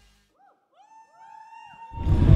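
Faint electronic tones sweeping up and down in several overlapping arcs, each rising and then falling in pitch, beginning about half a second in after the music cuts off abruptly.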